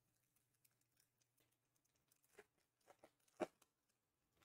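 Foil wrapper of an Upper Deck SP Authentic hockey card pack being torn open and peeled off the cards. It gives faint crinkling and small crackles, with one sharper crackle about three and a half seconds in.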